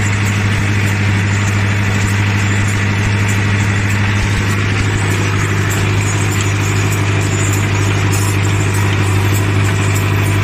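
A Mahindra Arjun 605 DI MS tractor's four-cylinder diesel engine running at a steady, even speed, heard from the driver's seat as the tractor pulls a tillage implement through the field.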